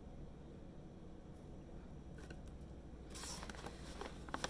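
Faint room tone with a few light clicks, then a brief rustle near the end as dried calendula petals are handled from a paper bag into a jar.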